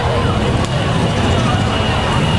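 Steady low rumble of a vehicle driving slowly, with a hiss of road noise over it and faint voices in the background.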